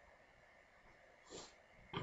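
Near silence with faint room hiss, broken by a short, sharp breath from the narrator about a second and a half in. At the very end comes the first rasp of a throat-clear.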